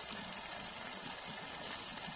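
Spinach and potato curry simmering in an open wok: a steady bubbling hiss.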